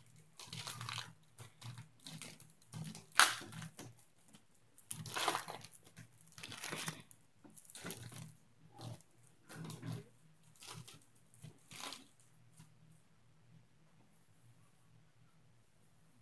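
A trading-card pack wrapper being torn open and crinkled in the hands, in irregular crackling bursts that stop about three-quarters of the way through.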